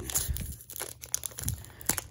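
Foil Pokémon TCG booster pack wrapper crinkling and crackling in the hands, in short irregular bursts.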